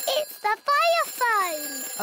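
Cartoon telephone bell ringing with a steady high ring. From about half a second in, a cartoon character's voice sounds over it, gliding up and then falling in pitch.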